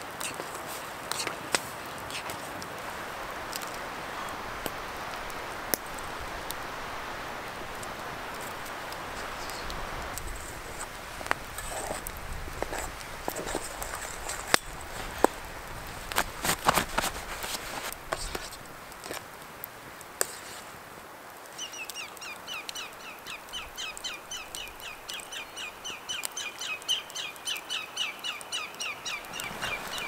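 Campfire crackling with a steady hiss and sharp pops, with louder clinks of metal pans and utensils around the middle. In the last third a bird calls over and over, about two calls a second.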